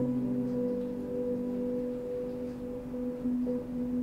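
Soft background music of long, held, ringing notes, the pitches shifting slowly now and then.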